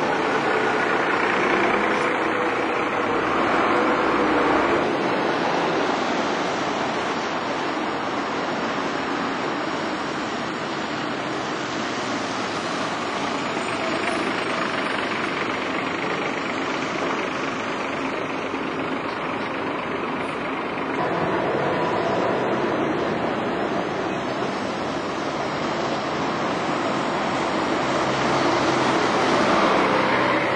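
Diesel buses passing close on a wet street: engine sound mixed with the hiss of tyres on wet tarmac, swelling several times as each bus goes by.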